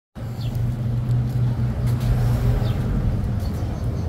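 Street traffic: a motor vehicle's engine running nearby, a steady low hum.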